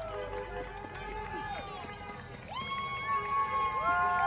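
Scattered people cheering from the roadside: overlapping long held shouts and whoops that slide up at the start and drop at the end, thinning out then swelling again about two and a half seconds in.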